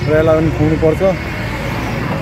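A man talking for about the first second, over steady street traffic noise that carries on after he stops.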